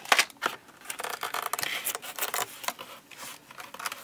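Cardboard toy box and its packaging being handled and tipped, an irregular run of small clicks, taps and rustles.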